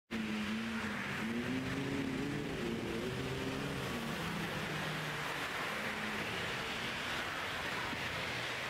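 Street traffic: a car driving past, its engine note rising and falling in the first few seconds over steady road noise.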